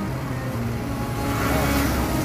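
A motor vehicle engine running steadily, with road noise swelling in the second half as traffic passes.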